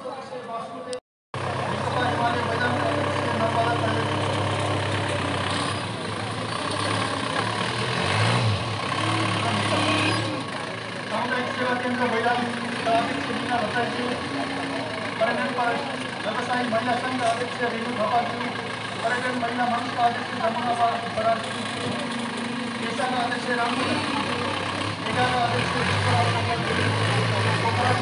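Crowd chatter on a busy street, with a motor vehicle's engine running steadily under it, plainest in the first ten seconds or so. The sound drops out briefly about a second in.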